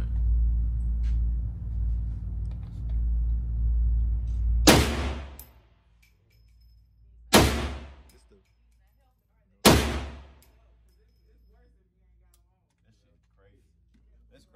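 Three shots from a GLFA .458-calibre AR rifle, spaced about two and a half seconds apart, each ringing on in the echo of an indoor range. A steady low rumble runs until the first shot.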